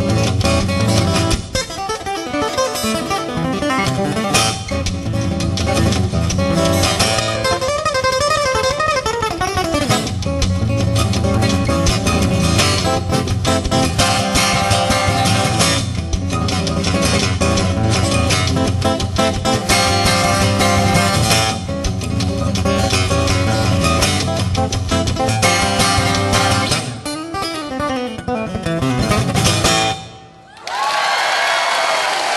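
Solo acoustic guitar played fingerstyle at a live concert, a full, busy texture with a steady bass line under the melody, thinning out and closing off at the very end.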